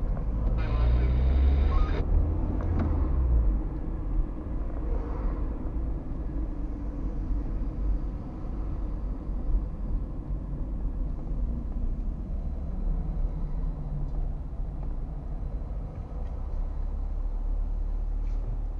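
Car driving in town heard from inside the cabin through a dashcam: a steady low engine and road rumble. The rumble is louder in the first few seconds, with a short hiss about a second in, then settles to an even drone.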